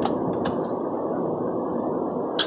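Steady road and tyre noise inside the cabin of a slowly moving car, with a faint click about half a second in.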